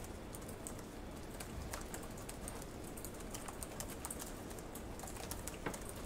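Faint, irregular clicking of keyboard typing over a steady low room hum.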